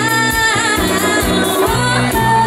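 Live dance band playing a bachata: a lead voice singing held, wavering notes over bass, guitar and drums in a steady beat.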